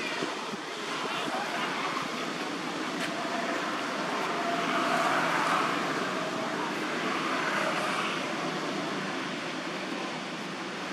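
Steady outdoor background noise: an even, fairly loud wash with no distinct events, with faint distant voices in the middle.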